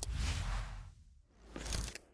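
Animation whoosh sound effects with a low bass tail: one swish fades away over about a second, then a second swish swells up and stops just after the end.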